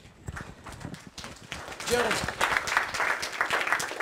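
Scattered hand-clapping from a small audience, quick irregular claps that swell about a second in, with a man's voice over them.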